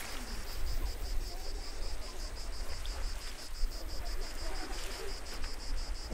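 An insect chirping in a steady, even high-pitched pulse, about seven pulses a second, over a low rumble on the microphone.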